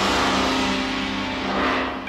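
Synthesizer noise sweep: a rushing hiss over a low sustained drone, used as a transition in progressive rock music. The hiss thins and fades out near the end.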